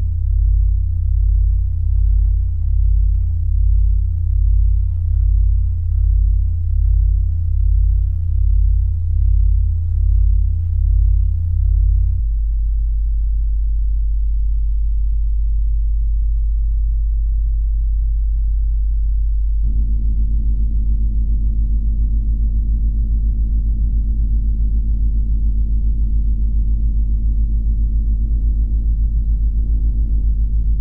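Deep, loud electronic drone from a film soundtrack. It throbs slowly, about once a second, for roughly twelve seconds, then holds steady. About twenty seconds in it changes to a buzzier hum.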